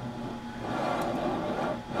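Drawn wire sliding through the rollers of an ultrasonic transducer holder, a steady rubbing, rolling noise. Two faint clicks about a second in come from relays in the test box, the relays that trigger a flaw marker.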